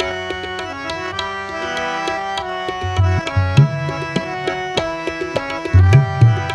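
Harmonium chords held under a running tabla rhythm, an instrumental passage of Sikh kirtan. Deep bayan strokes, some gliding upward in pitch, come in clusters about three seconds in and again near the end.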